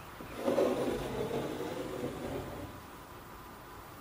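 A pencil scraping along the edge of a plywood boat hull as a rough fairing line is marked. The rubbing stops about two and a half seconds in.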